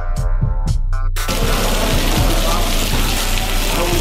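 Funk-style guitar music that cuts off about a second in, giving way to a steady, dense hiss of beef fajitas with peppers and onions sizzling on a hot cast-iron skillet.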